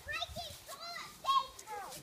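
Children's voices: several kids chattering and calling out at play, high-pitched, with one louder call about a second and a half in.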